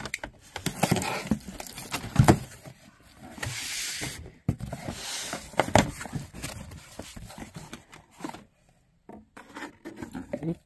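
Cardboard shipping boxes being handled, with flaps rustling and scraping, and lidded glass jam jars knocking and clinking against the cardboard dividers as they are set in and lifted out. A longer scrape of cardboard comes about three to four seconds in, among scattered sharp knocks.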